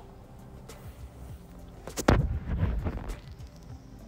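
Soft background music with steady tones throughout. About two seconds in, a single sharp knock on the wooden cutting board, the loudest sound, followed by about a second of louder handling sound.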